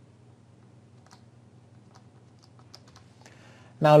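Faint, scattered clicks of a computer keyboard as a chess move is entered, over a steady low hum. The clicks come more often in the last second or so.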